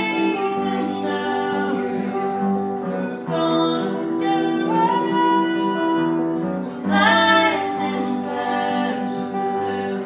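Two women singing together in close harmony, accompanied by two acoustic guitars, with a long held note in the middle.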